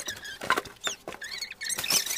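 Rustles and knocks close to the microphone, mixed with short high-pitched chirps and squeaks, some of them falling in pitch.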